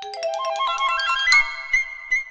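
Piccolo and xylophone duet: a quick rising run of short, struck notes climbs steadily, then about a second in lands on a long, high held note with a fluttering trill.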